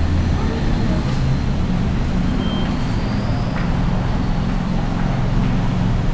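Street traffic: a steady low engine rumble and hum that carries on throughout.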